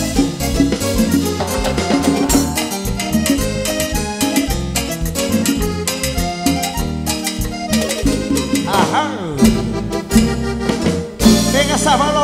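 Live Latin dance band music with a steady beat: keyboard over timbales, cowbell and drum kit. The music dips briefly near the end.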